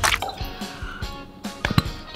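Clear slime liquid squeezed from a plastic bottle, dripping into a glass bowl of activator solution, with a few sharp clicks near the end, over background music.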